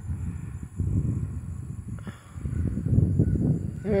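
Low, uneven rumble on the phone's microphone, with a couple of faint clicks in the first half.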